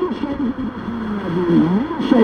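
An Arabic-language FM station picked up over a long distance by ionospheric scatter, playing through a Blaupunkt car radio: a man's voice drawn out in long, slowly sliding tones over a noisy background.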